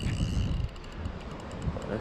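Wind buffeting the microphone while a fishing reel is cranked to bring in a hooked fish, its gears giving faint fine ticking.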